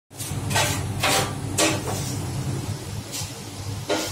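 Several short scraping or rustling noises, each brief and irregularly spaced, over a steady low hum.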